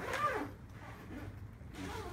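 Clear plastic window panel of a pop-up pod rustling and crinkling as it is pulled and folded by hand, loudest in a short burst near the start.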